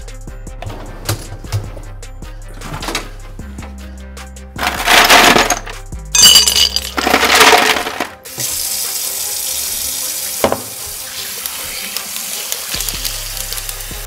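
Ice cubes clattering into a large glass bowl in two loud rushes, about five and seven seconds in, after a few light clinks of the glass. Then a steady rush of water pours into the bowl, filling it with ice water. Soft background music plays underneath.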